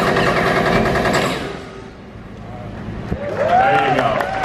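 Stunt-show special-effects gunfire: a fast machine-gun-like rattle of compressed-air bullet-hit effects, fading out about a second and a half in. Voices rise near the end.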